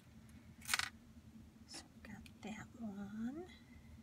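A few small clicks and clinks of buttons being picked up and set down, the sharpest about three-quarters of a second in. Near the end a short hummed "hmm" that rises in pitch.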